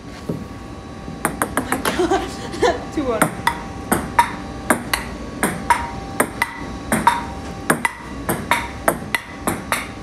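Table tennis ball being played in a rally, clicking sharply off the paddles and the table. A quick run of bounces about a second in is followed by steady back-and-forth hits about two a second.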